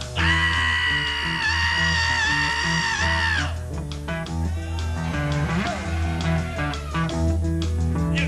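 Rock band playing live: electric guitar and a repeating low riff under drums. A loud, long high note is held from the start for about three and a half seconds before the band carries on without it.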